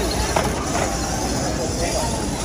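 Indistinct voices of people in a large hall over a steady low background hum.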